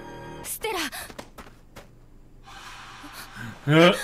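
Anime episode soundtrack with a character's short falling vocal sound and background music, then a man laughing loudly near the end.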